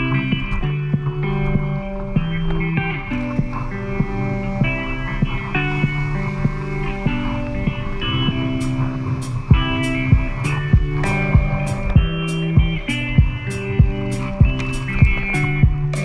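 Background instrumental music with held melodic notes; a steady beat comes in about halfway through.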